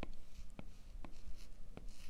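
Stylus tip tapping on an iPad's glass screen, about four light, uneven taps, each tap filling a shape with colour.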